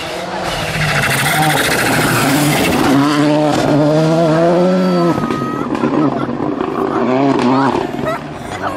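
Volkswagen Polo rally car driven hard on a gravel stage: the engine revs up and down through gear changes, and gravel hisses and sprays under the tyres. Mid-way the engine pitch climbs, then drops sharply about five seconds in.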